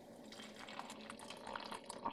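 Faint sound of just-boiled water pouring from an electric kettle into a glass mug to steep a tea bag.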